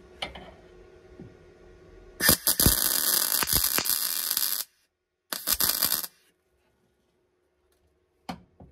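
MIG welding on the car's steel inner sill: the welding arc runs in two bursts, one about two and a half seconds long and a shorter one of under a second just after, each starting and stopping abruptly, with a couple of light clicks before the first.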